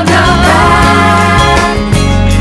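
Music soundtrack with a singing voice over a steady bass line.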